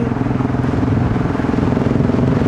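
Single-cylinder engine of a 2008 BMW G650 Xchallenge dual-sport motorcycle running at a steady cruising speed, its pitch holding even.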